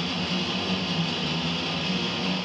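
Grunge rock music with heavily distorted electric guitar, a dense, steady wall of sound.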